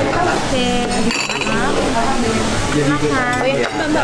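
Busy restaurant din: voices talking at neighbouring tables, with dishes and cutlery clinking, including a bright clink about a second in.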